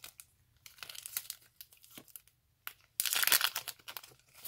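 Foil wrapper of a Pokémon Celebrations booster pack crinkling as it is torn and peeled open from the cards. A few light crinkles, then a louder burst of crinkling about three seconds in.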